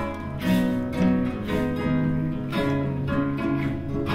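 Acoustic guitar strummed in a steady, even rhythm, with a hand-held frame drum struck with a beater about twice a second.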